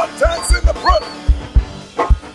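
Live upbeat gospel praise music with a heavy kick-drum beat and short, sliding vocal calls over it.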